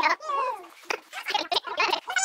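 A child's wordless voice: one sliding vocal sound at the start, then several short voiced noises.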